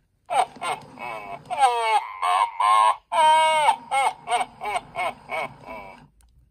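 Gemmy Mini Santa animatronic plush set off by its paw button, its sound chip playing a recorded Santa character voice through its small built-in speaker: animated talking with big swoops in pitch, starting a moment after the press.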